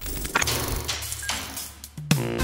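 A short bridge of sound-effect noise: a few sharp mechanical clicks over a rustling hiss, with faint music underneath. It fades down near the end.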